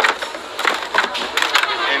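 Rustling and a few sharp knocks of things being handled in a red plastic shopping basket.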